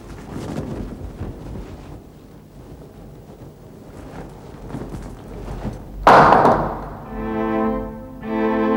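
Faint low rustling and knocking, then a single loud, sudden thud about six seconds in that dies away over a second. Bowed string music begins right after it.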